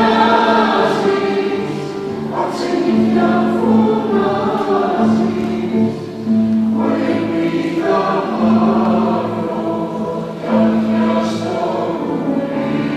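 Mixed choir of men and women singing a slow song together, in phrases of about four seconds with a short breath between them, over a steady held low note.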